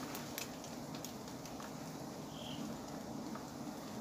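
Steady low hum of a giant honey bee (Apis dorsata) colony massed on its open comb, under a faint hiss with a few small ticks.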